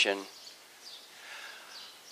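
A man's speaking voice trails off just after the start, leaving a pause with only faint background ambience.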